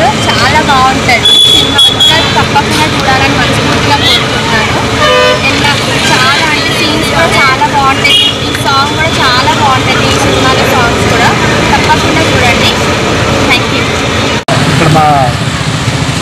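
A woman talking over street traffic noise, with a vehicle horn sounding briefly about five seconds in.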